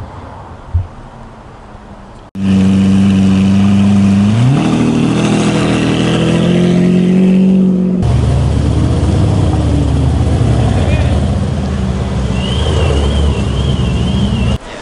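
Loud car engine noise cutting in suddenly: an engine runs at a steady pitch, then revs up about four seconds in and holds the higher revs. From about eight seconds in, a deeper, rougher rumble follows as Mercedes-AMG sedans drive slowly past, with a faint warbling high tone near the end.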